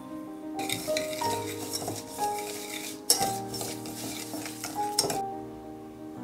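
Wire whisk beating egg yolks and sugar in a bowl: a quick, scratchy swishing that starts about half a second in, pauses briefly around three seconds and stops a little before the end, with two sharp knocks of the whisk against the bowl. Background music plays underneath.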